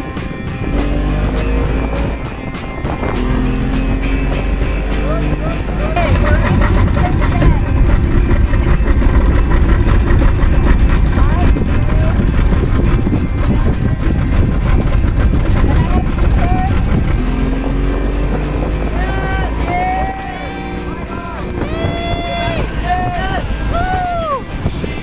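An 85 hp outboard motor on a tow boat rising in pitch as it accelerates, with a loud rush of water and wind in the middle stretch while the boat runs at speed. It rises in pitch again near the end.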